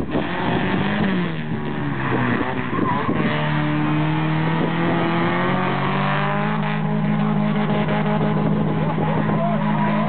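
Ford Sierra rally car's engine running hard as the car approaches and passes close by. Its note falls over the first couple of seconds, steps up about three seconds in, and then holds one steady pitch.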